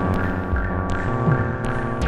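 Analog modular synthesizer music from a Moog Subharmonicon and DFAM: a throbbing drone of many stacked held tones that shifts in steps, with percussive hits that drop quickly in pitch and a few sharp high ticks.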